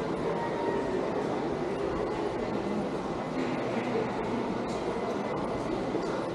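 Steady ambient din of a roofed shopping arcade: shoppers' footsteps and distant voices blending into a continuous murmur.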